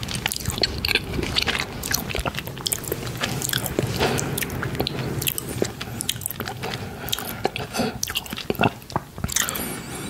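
Fluffy face brush swept against the microphone at close range: a scratchy rustling broken by many small clicks.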